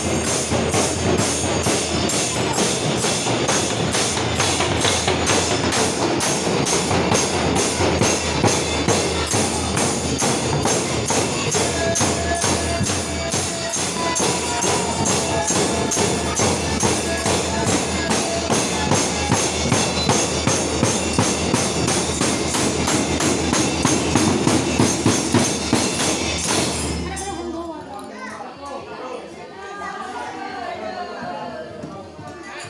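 Barrel drums (dhol) beaten by dancing drummers in a fast, steady rhythm, with a bright metallic ring on the beats. The playing stops suddenly near the end, leaving crowd chatter.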